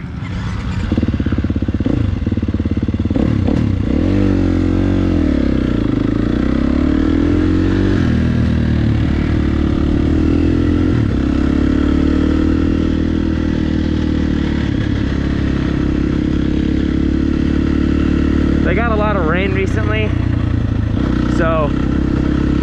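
KTM dirt bike engine heard from on board while riding, its pitch climbing and dropping over the first several seconds as it revs through the gears, then running at a steadier pace.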